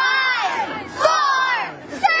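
A group of children screaming and cheering in high-pitched shrieks, in two bursts.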